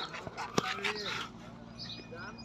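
Goats nosing into and chewing a tub of chopped dry maize stalk fodder: dry rustling and crunching, with one sharp crunch about half a second in.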